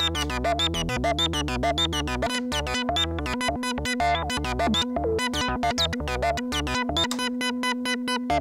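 Eurorack modular synthesizer playing a fast sequenced pattern from Doepfer A-155 analog/trigger sequencers: a stream of short, plucky pitched notes, some with little pitch glides, over a held mid tone and a pulsing low bass line that thins out about halfway through.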